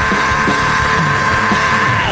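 Live rock band playing loudly, the drum kit hitting steadily under a long held high note.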